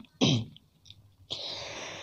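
A male reciter's voice between sung lines: one short, sharp vocal burst that falls in pitch, then a pause, then a long audible breath drawn in before the next line.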